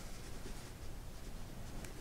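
Faint rustling and scratching of yarn being worked with a metal crochet hook, the hook pulling loops through the stitches of a thick knit fabric.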